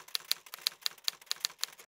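Typewriter key-strike sound effect: a fast run of sharp clicks, about six a second, that stops shortly before the end.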